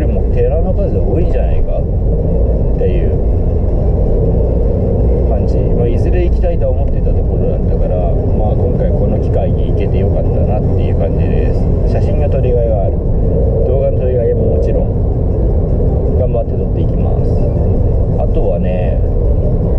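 A man talking inside a moving car over the steady low rumble of the engine and road noise in the cabin.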